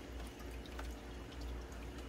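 Water dripping and trickling in an AeroGarden Bounty's hydroponic tank, with a few faint small taps over a steady low hum.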